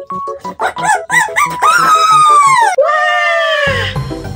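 Light, plinky keyboard music, overlaid about half a second in by a run of short up-and-down pitched cries and then two long, loud falling cries. A heavier beat comes in near the end.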